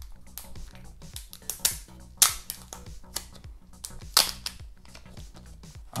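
Clear protective plastic film being picked at and peeled off a hard plastic device, giving a few sharp crackling snaps, the loudest about two seconds in and another about four seconds in.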